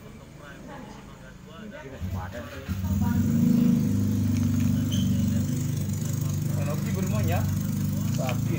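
An engine starts running steadily about two to three seconds in, a low, even hum that holds to the end, with faint voices behind it.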